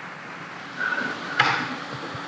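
Quiet room noise with a brief faint tone just under a second in, then a single short knock or click.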